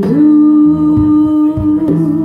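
A woman's voice holds one long, steady sung note over strummed acoustic guitar, part of a live cover song.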